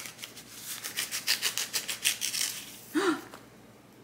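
White paper wrapping rustling and crinkling in a quick run of rustles as it is unrolled from around a plant cutting, then stopping; a sharp gasp follows near the end.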